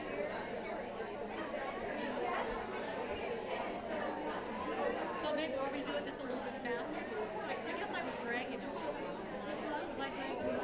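Many people talking at once in a large hall: a steady hubbub of overlapping voices with no single voice standing out.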